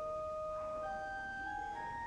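Church organ played slowly, a few sustained notes held together, with individual notes changing every half second or so.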